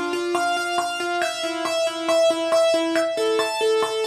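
Synthesizer arpeggio from Logic Pro's arpeggiator set to random direction: a fast, even run of single synth notes, about five a second, jumping unpredictably among the pitches of a short melody spread over two octaves.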